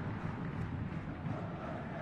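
Steady low murmur of a football stadium crowd heard through a TV match broadcast, with no single sound standing out.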